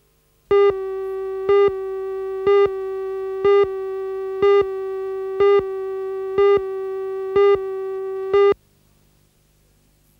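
Tape countdown leader's line-up tone: a steady electronic tone with a louder beep once a second, nine beeps in all, then it cuts off suddenly.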